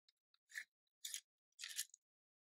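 Three short, faint rustles of a greased cloth patch being handled over the muzzle of a flintlock musket during loading.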